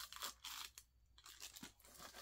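Clear plastic wrapping crinkling faintly in a few short rustles as it is pulled off a newly unboxed item, mostly in the first second.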